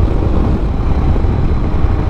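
Royal Enfield Himalayan's 411 cc single-cylinder engine running at a steady cruise, heard from the rider's seat with the rush of riding noise. The sound holds steady, with no change in pitch.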